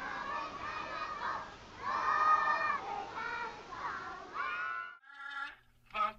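A crowd of children chattering and calling out together, many high voices overlapping, with one longer held call about two seconds in. The voices cut off abruptly about five seconds in.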